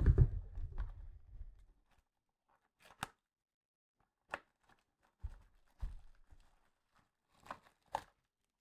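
Plastic shrink wrap being cut and torn off a cardboard trading-card box, heard as a series of short, separate crackles and tears. A low handling rumble fades out over the first two seconds.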